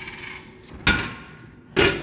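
A vending machine's pickup-bin flap door knocking twice, about a second apart, as it is pushed open to reach the dispensed snack.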